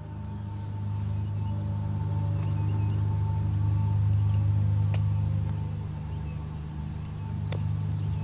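Low, steady motor hum with a faint whine above it, growing a little louder toward the middle and easing off later, with two faint clicks.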